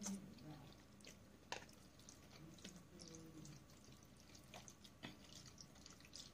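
Very quiet wet mouth sounds of someone eating fettuccine: a short suck as a noodle strand goes in at the start, then chewing with a few faint, scattered clicks.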